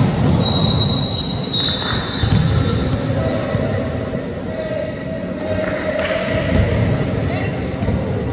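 Echoing sports-hall din between volleyball rallies: players' voices and a ball bouncing. A sustained high squeal, about two seconds long and stepping slightly down in pitch partway, starts about half a second in.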